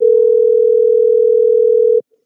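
Telephone ringback tone, the steady ring a caller hears while the dialled line rings at the other end: one two-second ring that starts and stops abruptly, the call not yet answered.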